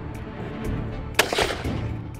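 A single gunshot about a second in, followed by a short rush of noise as the shot throws up water around an alligator: the shot went a little low and does not look like it hit. Background music with a light, even beat plays under it.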